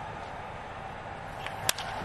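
A single sharp crack of a baseball bat meeting the ball a bit under two seconds in, over a steady low background hiss; solid contact that sends the ball out for a grand slam home run.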